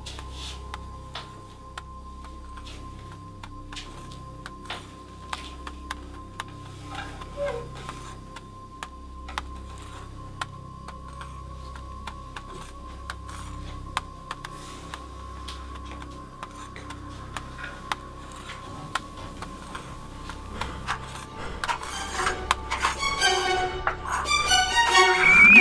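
Tense ambient horror film score: a low drone under a sustained high tone, scattered with sharp ticks, swelling into a loud burst near the end.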